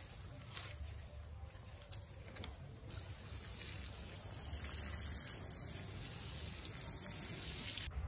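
Dry grass mulch dropping onto a soil seed bed with a few soft rustles, then from about three seconds in a steady hiss of water poured over the mulched bed, which stops abruptly near the end.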